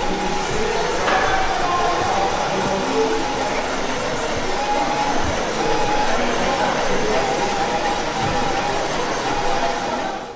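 Many people talking at once in a large hall, no single voice standing out, with faint sustained notes from instruments in the middle stretch.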